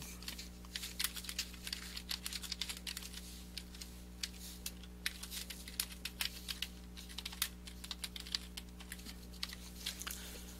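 Typing on a computer keyboard: an irregular run of quick key clicks, over a faint steady low hum.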